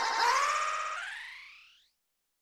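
A man's voice through vocal effects, heard as a stack of layered pitches. About a second in it glides upward like a siren and fades away to silence just before the end.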